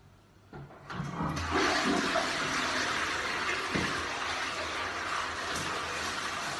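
Toilet flushing: a rush of water starts about a second in, loudest just after it starts, then runs on steadily.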